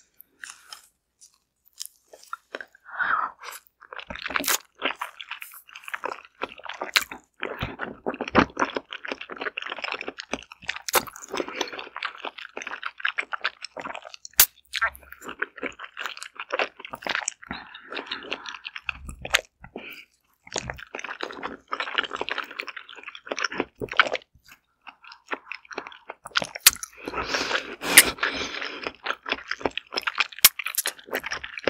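Close-miked biting and chewing of a whole steamed Korean zucchini (aehobak): repeated bites and wet chewing with many sharp clicks, starting about two seconds in.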